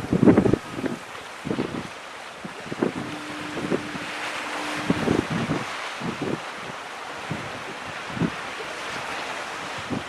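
Wind buffeting the microphone in irregular gusts, over a steady wash of harbour water; the strongest gust comes just after the start. Midway a faint steady tone holds for about two seconds.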